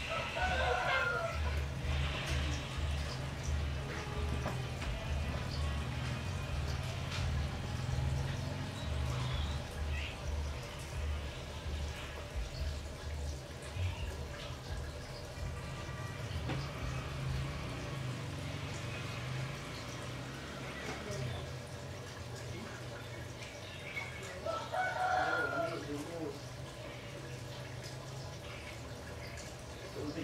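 Steady bubbling from an aquarium air stone, with a low pulsing throb that fades out about two-thirds of the way through. Two short pitched calls that bend up and down stand out above it, one at the very start and one about 25 seconds in.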